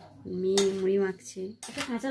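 Sharp clinks of cutlery against a dish, strongest about one and a half seconds in, alongside a woman's voice.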